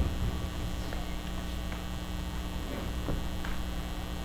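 Steady electrical mains hum, a low drone with a few higher buzzing overtones, with a few faint ticks over it.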